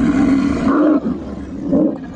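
Harnessed sled dogs howling and yelping together in a wavering chorus, the excited noise a dog team makes before a run; it dips about a second in and swells again near the end.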